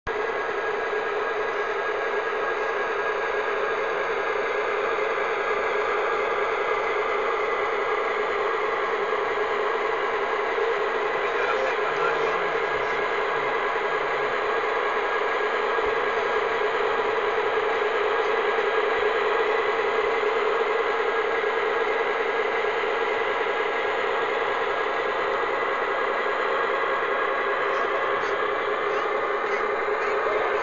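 O-scale model of an Electroputere OSE A-558 diesel locomotive running: a steady hum of several tones with little bass.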